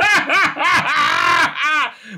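A man laughing loudly, a run of voiced laughs that rise and fall in pitch.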